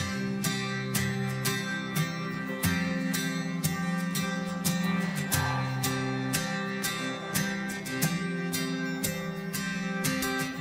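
Karaoke backing track of a sertanejo pop song with the lead vocal reduced out: acoustic guitar strumming over a steady beat of about two strokes a second.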